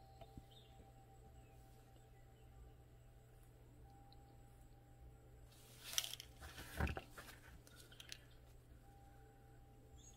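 Near silence with a steady low room hum, broken about six to seven seconds in by a few brief soft clicks and rustles of gloved hands handling a small plastic ink bottle and a silicone mold.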